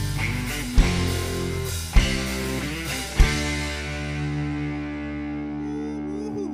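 Live rock band of electric guitars, bass and drums hitting three accented chords together with the drums, about a second apart, as a song ends. After the last, about three seconds in, the chord is left ringing and slowly fades.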